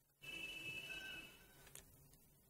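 A short breathy exhale, about a second long and likely through the nose, starting suddenly, followed by a faint click.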